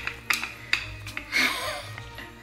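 A wooden rolling pin working soft cookie dough on parchment over a stone counter, giving a few sharp knocks and clicks in the first second or so, followed by a brief voice-like sound. Soft background music plays underneath.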